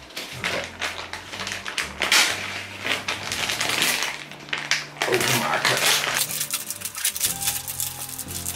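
Clear plastic packaging crinkling and rustling as it is handled, in quick runs of crackles, with background music underneath.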